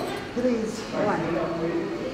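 A person speaking; the words were not transcribed.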